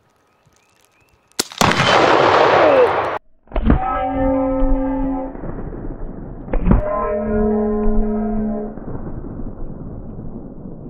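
A sharp crack of an air rifle shot, then a loud explosion blast lasting about a second and a half that cuts off sharply. Two more heavy booms follow about three seconds apart, each trailing a long ringing drone that fades.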